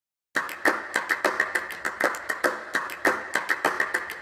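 A rapid, uneven series of sharp clicks and taps, several a second, starting suddenly out of silence about a third of a second in.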